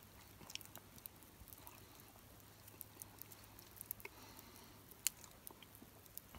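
Faint chewing of freshly baked bread, with scattered small crackles and one sharper click about five seconds in.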